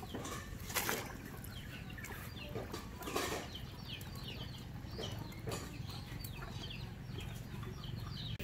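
Chickens calling with many short, high, falling cheeps. Two brief splashes come as leaf-wrapped rice cakes are dropped into a pot of water, over a steady low rumble.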